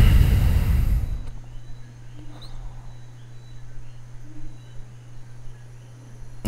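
A rush of air blowing across the microphone for about a second, then a quiet, steady low hum.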